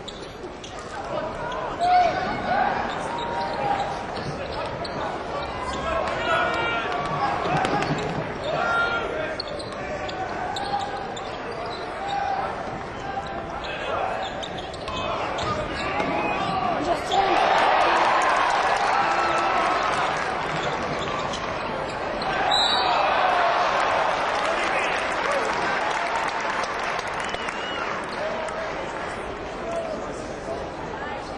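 Basketball game sound in an arena: a ball bouncing on the court amid crowd noise and voices, the crowd getting louder about halfway through and again a little later.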